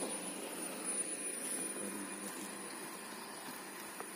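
Low, steady outdoor background noise with a faint, continuous high-pitched whine running through it.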